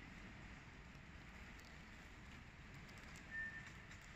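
Faint, steady room tone of a large store, with one short high beep about three and a half seconds in.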